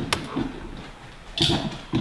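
A single click of a laptop touchpad just after the start, then a brief low voice sound about one and a half seconds in.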